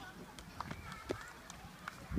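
Faint background voices with a few light, sharp taps scattered through a quiet stretch.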